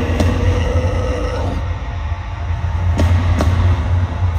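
Loud, deep bass rumble from a festival PA at a live deathcore show, overloading a phone-style recording, as the band's sound rings out after the song's playing stops. A held note fades out about a second and a half in, and two sharp knocks come near the end.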